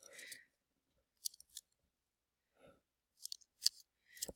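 Faint, brief rustles and clicks of fingers squeezing two glued pieces of thin cardboard together, a few soft clicks about a second in and again near the end.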